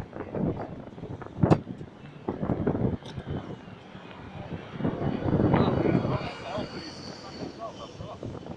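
Indistinct chatter of people nearby over a steady background of engine noise, with a single sharp click about a second and a half in.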